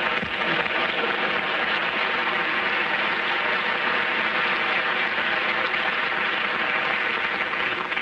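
Large theatre audience applauding and laughing, a steady, dense wash of clapping that carries through the whole stretch, heard through old kinescope-recorded sound.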